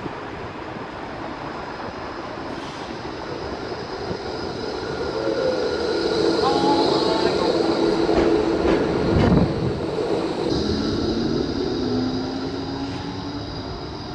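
Melbourne tram pulling into a stop and running past: a rumble that builds over the first few seconds and is loudest around the middle, with steady whining tones over it. There is a thud about nine seconds in, and a rising whine near the end.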